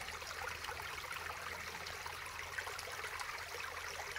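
Small shallow stream trickling over stones, a soft steady babble of running water.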